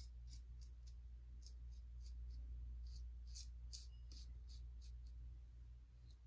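Merkur Futur double-edge safety razor cutting the hairs on a lathered face and neck: a dozen or so short, faint scraping strokes at an uneven pace, over a steady low hum.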